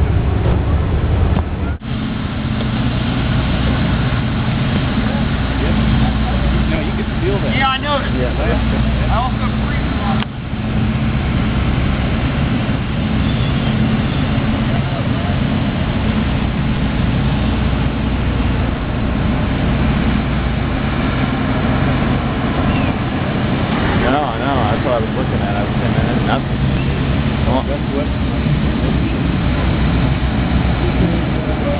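A steady low mechanical hum like an idling engine, with people's voices coming through now and then in the background.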